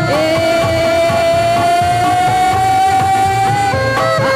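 Loud Sundanese traditional processional music for a Benjang eagle dance: one long held melodic note, slowly rising in pitch, changes to shorter notes near the end, over steady drumming.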